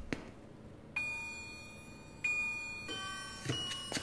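Four soft bell-like chime notes at different pitches, struck one after another with gaps of about a second or less, each ringing on and fading.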